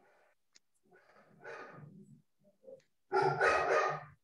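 A dog barking: faint sounds at first, then a loud short burst of barks near the end.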